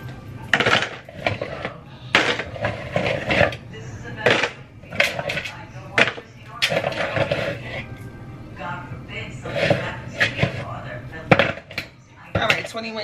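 Frozen chicken wings being handled at a kitchen counter: plastic bag crinkling and repeated hard knocks and clatters as the stiff wings are pulled from a plastic bowl and set down on a plastic plate.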